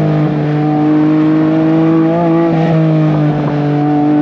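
Porsche 718 Cayman GT4 RS's 4.0-litre naturally aspirated flat-six running steadily while the car cruises through bends, its pitch holding roughly level with small wobbles.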